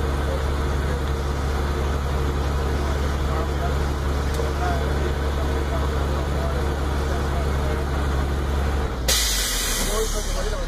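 Truck engine idling steadily while its air compressor builds brake-system pressure; about nine seconds in, the air governor cuts out with a sudden loud hiss of released air, the sign that the air tanks have reached full pressure (around 120–125 psi).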